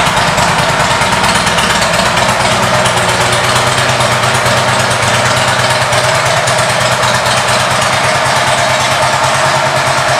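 2009 Harley-Davidson Ultra Classic's V-twin idling through its Vance & Hines exhaust, with a steady, even pulsing beat.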